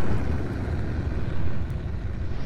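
Deep, noisy rumble of a cinematic boom sound effect, slowly fading as the tail of the hit dies away.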